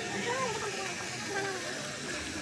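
Street ambience of a steady hiss with a few short snatches of nearby voices.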